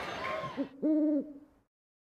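Two owl-like hoots, a short one and then a longer held one about a second in, following an abrupt cut-off of crowd noise.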